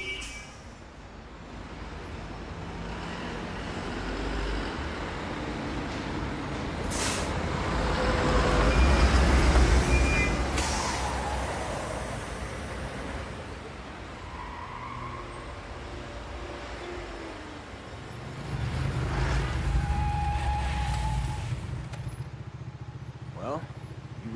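A heavy tanker truck drives along a city street, its engine rumble building to its loudest about nine seconds in. There is a sharp hiss of air brakes around ten seconds, and a second vehicle rumble swells later on.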